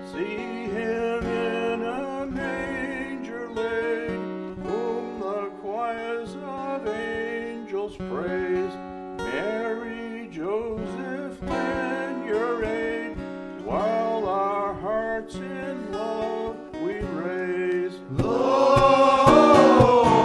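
Acoustic guitar accompaniment under a single man's voice at the microphone. About two seconds before the end, a men's choir comes in singing and the music gets fuller and louder.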